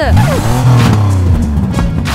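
Background music over a car engine revving sound: a falling sweep at the start, then a steady low running note.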